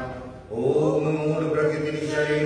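A man chanting a mantra in long, steady-pitched held tones. The first tone fades out, there is a brief pause for breath, and a new long held tone begins about half a second in.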